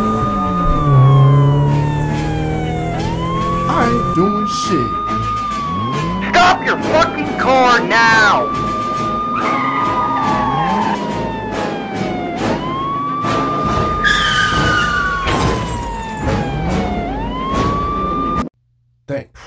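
Police car siren wailing. Each cycle rises quickly to a high note, holds it, then falls slowly, repeating about every four seconds.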